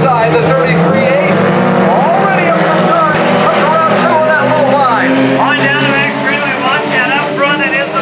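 A pack of sport compact race cars racing on a dirt oval: several four-cylinder engines revving, their pitches rising and falling over one another above a steady low engine drone.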